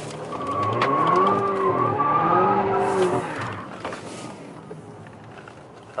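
Alfa Romeo Giulia's engine revving at full throttle with the tyres squealing as the car spins a donut with traction control switched off, heard from inside the cabin. The revs and the squeal build for about a second, hold for about two more, then die away.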